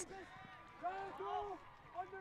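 Faint voices calling out across the field, a few short rising-and-falling calls in the middle, over a low background hiss.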